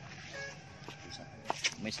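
A man speaking briefly near the end, with two sharp clicks just before his words.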